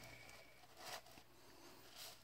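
Near silence, with the faint shifting of aquarium gravel as a hand presses a plant into it under water, slightly louder just under a second in.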